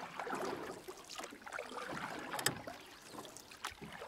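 Kayak paddle dipping into calm water, with small irregular splashes and water trickling off the blade, and one sharper tick about two and a half seconds in.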